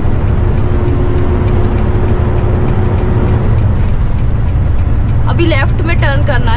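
Inside a semi-truck cab while driving: a steady, low rumble of the truck's engine and road noise.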